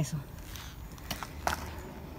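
Three faint clicks about half a second apart, then a low steady rumble of skate wheels rolling on asphalt as she gets moving.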